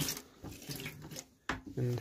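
Manual pump-action sink faucet being worked by hand, with water trickling into a small stainless steel sink. A click at the start and a sharp click about a second and a half in come from the pump handle.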